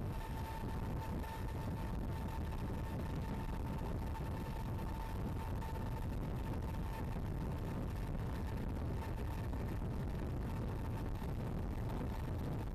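Steady aircraft cabin noise: the engines' even, low-heavy drone with a constant thin whine above it, heard from inside the plane.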